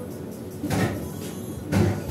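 Two dull knocks, about a second apart, the second louder, over faint background music.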